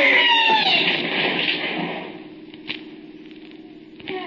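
A scream that falls in pitch and fades away within the first second, the sound of a man dropping into a pit in a cave. A dull rumble follows, then a faint low hum.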